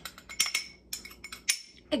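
Metal spoon clinking against a small glass bowl while scooping out cinnamon-sugar topping: a few light clinks, the sharpest about a second and a half in.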